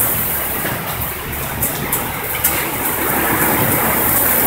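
Heavy tropical downpour with hail, driven by strong wind: a steady, dense roar of rain, with a couple of sharp ticks about halfway through.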